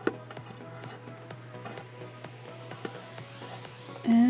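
Faint background music, with a sharp click just after the start and a few soft ticks and rubs from bracelet strings being knotted and pulled tight against a cardboard board.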